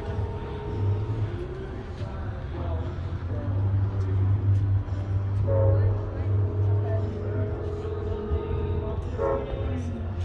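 Steady low rumble of a distant approaching Amtrak passenger train, with faint steady tones above it and people talking in the background.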